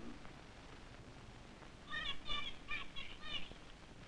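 A run of about six short, high chirping calls from a small animal, starting about halfway through, over faint film hiss.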